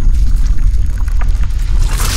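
Intro-animation sound effect: a loud, deep rumble with scattered crackles, then a whoosh swelling near the end.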